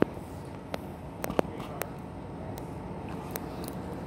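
Steady room noise with several sharp clicks and taps scattered through it.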